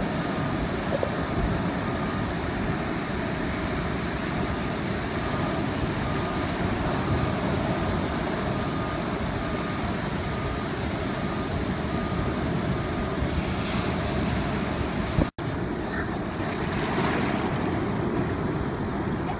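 Ocean surf breaking and washing in steadily, with wind buffeting the microphone; the sound drops out for a moment near the end.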